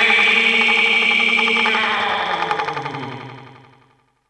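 The closing sustained chord of a song, ringing with a fast pulsing warble. Its lower notes slide down in pitch as the whole sound fades out to silence over the last second or two.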